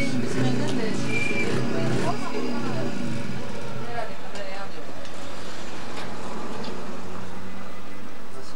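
Indistinct voices in the background for the first few seconds, over a steady low hum and background noise that carries on after the voices fade.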